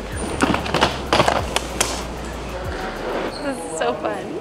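Wheels of a hard-shell rolling suitcase rumbling across a terminal floor, with a few sharp clicks in the first two seconds.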